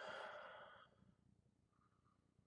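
A man's breath out through the mouth, a sigh lasting just under a second and fading away, taken between sniffs of a beer's aroma.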